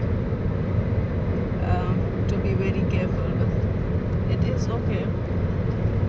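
Car cabin noise at highway cruising speed, about 120 km/h: a steady low rumble of engine and tyres on the road.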